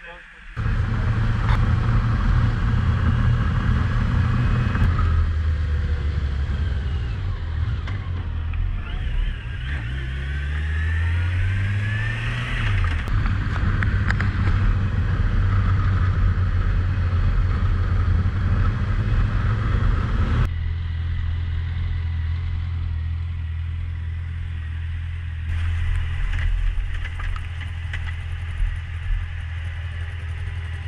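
Motorcycle engine running while riding, with a steady low engine note. About ten seconds in the pitch rises as the bike accelerates, then drops suddenly near thirteen seconds.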